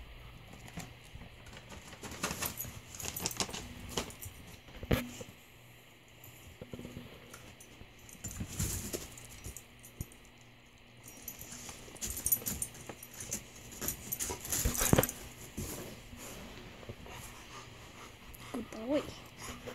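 A husky-type dog moving about right at the microphone: irregular clusters of metallic jingling, like collar tags, and fur and paw scuffs, with quieter gaps between.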